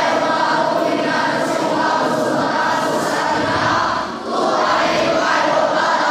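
A large group of children and adults singing together in unison, with a short break between phrases about four seconds in.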